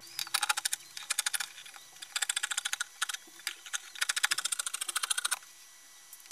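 Scissors cutting through fabric: rapid runs of crisp snips with brief pauses between them. The snipping stops shortly before the end.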